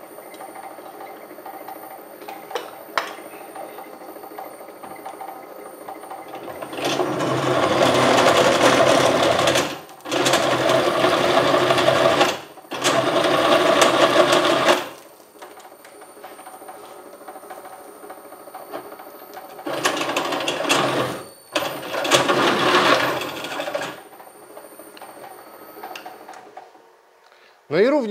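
Inverter-driven column drill press running at about 380 rpm with a steady high whine, its large drill bit cutting into a metal workpiece in five loud stretches of a few seconds each. The motor stops near the end.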